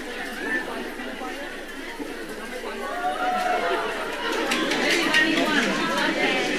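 Indistinct chatter of a group of people talking at once, growing somewhat louder in the second half.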